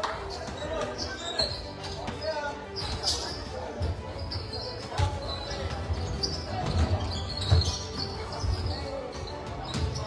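A basketball bouncing on a hardwood gym court: irregular dull thuds as players dribble, mixed with the voices of players and spectators carrying in the large hall.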